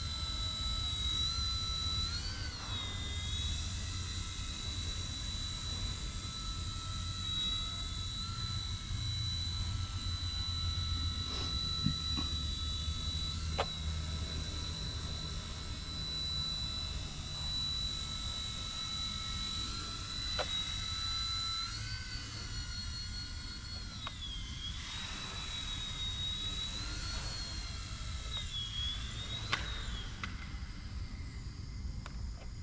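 Eachine E129 micro RC helicopter in flight: a steady high-pitched electric motor and rotor whine that rises briefly about two seconds in and again past the twenty-second mark, then dips and wavers near the end. A low rumble runs underneath.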